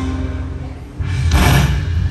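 Slot machine game sounds at the end of a Dragon Link hold-and-spin bonus. The game music fades, then about a second in a sudden whoosh with a low thump sounds as the bonus is tallied.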